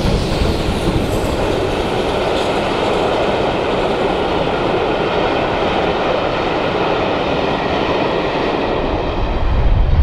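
Steam-hauled train's passenger coaches rolling past on the rails, a steady running noise with rhythmic wheel clatter. Near the end a louder, deeper rumble takes over.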